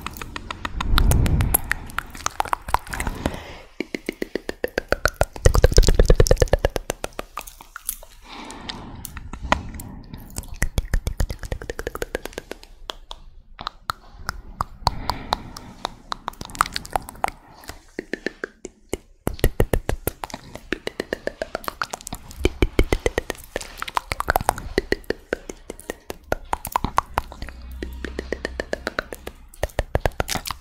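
ASMR mouth sounds close to the microphone: fast runs of wet clicks and pops, with a few low thumps in between.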